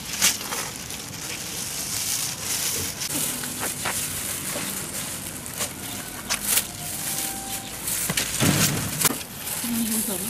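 Thin plastic sheets crinkling and crackling as rounds of tarhana dough are peeled off them and laid on a reed drying mat, with a louder rustle near the end.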